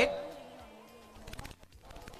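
A pause in a man's speech over a microphone: the end of his last word fades away over about half a second, leaving faint background voices and room noise until he speaks again.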